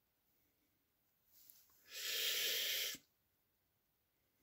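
A person's breath close to the microphone: a faint short puff about a second in, then a loud rush of air lasting about a second that stops abruptly.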